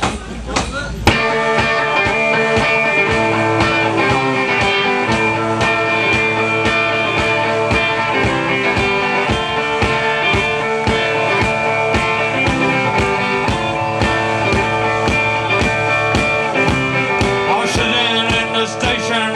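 A live band plays the instrumental opening of a song on electric guitars and drums. It comes in abruptly about a second in and keeps a steady beat.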